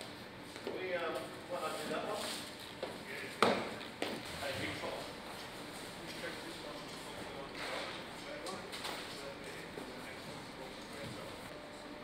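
Brief indistinct talking, then a single sharp thump a little over three seconds in, followed by a few lighter knocks and shuffles as cardboard boxes are handled and loaded into a van.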